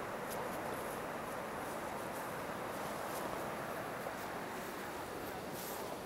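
Steady rushing of a distant waterfall heard across a gorge, even and unbroken, with a few faint high chirps over it.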